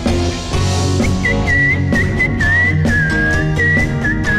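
Live rock band playing with drums, bass and guitars, with a cymbal crash near the start. Over it runs a high, pure, whistle-like lead melody that slides between long held notes.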